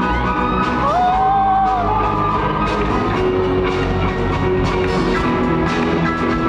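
Live rock band playing loudly in a large hall: drum kit, electric guitars, bass and keyboard together. A short sliding high note rises and falls about a second in.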